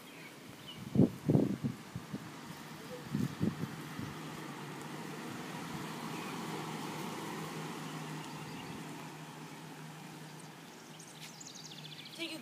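A few soft low thumps, then a steady engine hum that swells over several seconds and fades away, like a vehicle going by.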